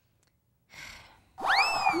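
A moment of near silence, then a soft intake of breath and a voice that swoops up high and slowly falls as it begins a spoken line.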